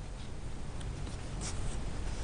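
Low background rumble with a few short scratching strokes, the clearest about one and a half seconds in.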